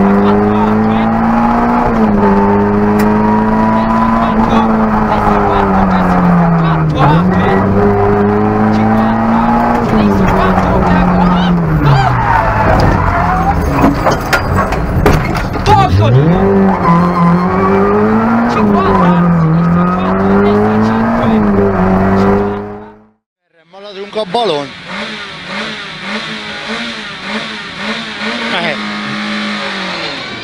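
Peugeot 106 Rallye rally car's engine at high revs, heard from inside the cabin, its pitch falling and climbing again several times, with a spell of knocks and rattles around the middle. About 23 seconds in the sound cuts out for a moment, then a Lada VFTS rally car's engine is heard from its own cabin, quieter.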